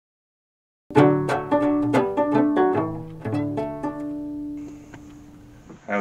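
A banjo picking a short tune of quick plucked notes, starting about a second in, then slowing to a held note that fades out near the end.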